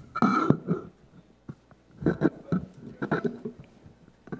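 Indistinct, muffled voices and short vocal noises in a few brief spurts, with a couple of small knocks.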